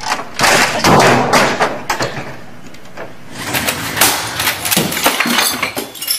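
A run of heavy thumps and crashes as office equipment is smashed, a keyboard beaten against a computer monitor. Several loud strikes in the first two seconds, a quieter stretch, then a fast flurry of sharp knocks and crashes from about three and a half seconds in.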